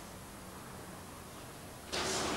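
Quiet pause holding only faint, steady hiss and a low hum, the background of an old TV recording. Just before the end the background abruptly becomes louder.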